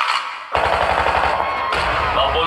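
Dance-remix track played loud over a PA system. The beat drops out for a moment, then about half a second in a rapid machine-gun-fire sound effect comes in over the music.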